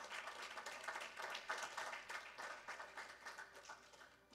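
A church congregation applauding, dense and irregular, fading out near the end.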